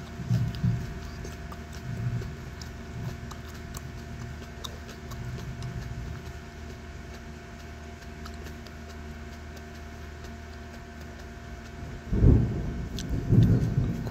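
Steady low hum of the room with faint thin tones. About twelve seconds in, a loud, deep rumble of thunder swells and rolls on to the end.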